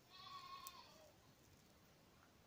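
A single faint, high-pitched animal call lasting under a second, falling slightly in pitch at its end, with a small click in its middle.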